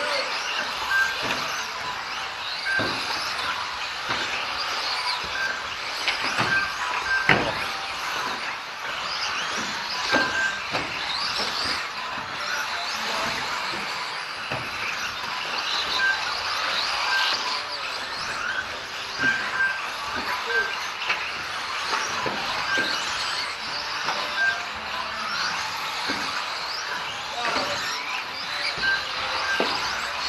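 Several small radio-controlled race cars running on an indoor track, their motors whining and rising and falling in pitch as they accelerate and brake, with scattered knocks from the cars hitting the track edges and short high beeps now and then.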